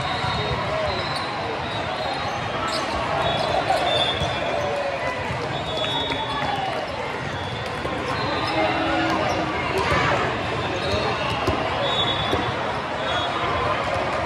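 Sports-hall ambience at a volleyball match: balls being hit and bouncing on the courts, short high squeaks scattered throughout, and a steady murmur of voices from players and spectators, echoing in the large hall.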